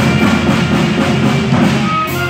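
Live jazz band playing: saxophones, clarinet and electric guitar over a drum kit, with busy drumming.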